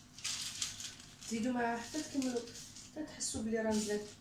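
A woman's voice speaking in short stretches, with a brief hissing noise about a second long near the start.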